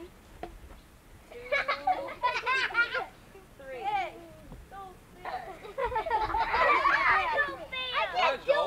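High-pitched voices of a group of young children calling out and chattering, several at once, growing loudest near the end.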